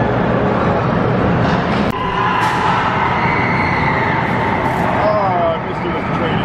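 Gerstlauer Euro-Fighter steel roller coaster train running along its track, a loud steady rush of noise echoing in a large indoor hall, with crowd voices mixed in. The sound changes abruptly about two seconds in.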